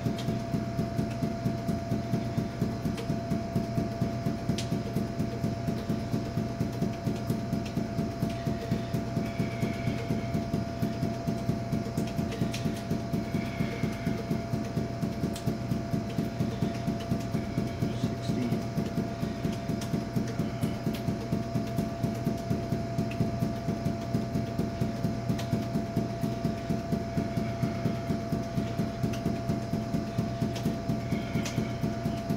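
Five juggling balls force-bounced off a hard tiled floor in a steady, even rhythm of about four to five bounces a second, each bounce a sharp smack. A steady hum runs underneath.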